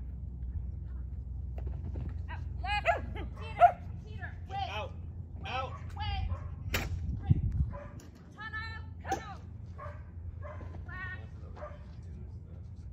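A dog barking and yipping over and over in short, high calls. Wind rumbles on the microphone until about two-thirds of the way through.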